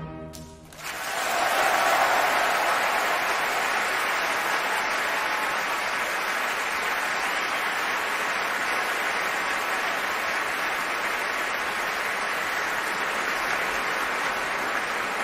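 An orchestra's final chord rings away in a large hall, then a big concert audience breaks into applause about a second in, which holds loud and steady.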